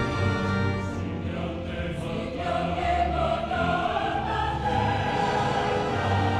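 Background music: a choir singing long held notes over an orchestra.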